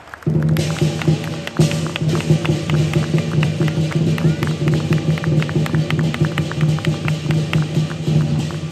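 Lion dance percussion of drum, cymbals and gong playing a fast, even beat. It starts suddenly about a quarter of a second in, after a brief lull, and keeps going.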